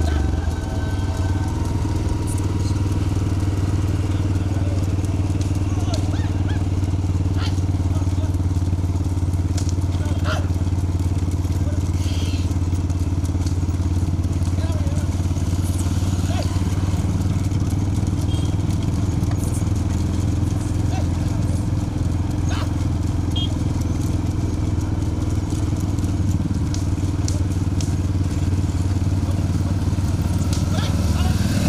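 A group of motorcycles running steadily at low speed close by, their engines making a continuous drone, with a few faint sharp ticks over it.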